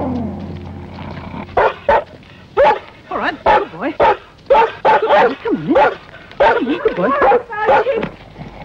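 Black-and-white collie barking over and over at a stranger, short, high barks coming two or three a second, starting about a second and a half in.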